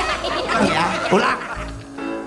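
A man laughing over background music; the laughter stops about one and a half seconds in, leaving sustained music tones.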